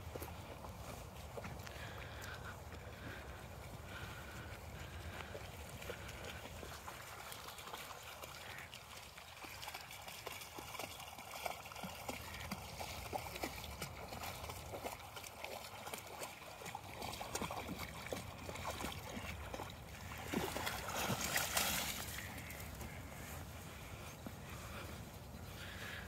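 Faint sloshing and splashing of shallow lake water as an Alaskan Malamute wades through it, with small splashy clicks and a louder stretch about twenty seconds in.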